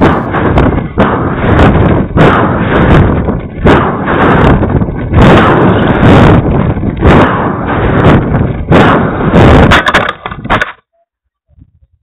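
Wind rushing and buffeting over the onboard keyfob camera's microphone as the rocket descends under its main parachute, with irregular knocks and rattles from the airframe. The noise cuts off suddenly about eleven seconds in.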